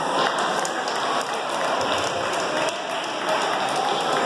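Spectators applauding, with voices mixed in.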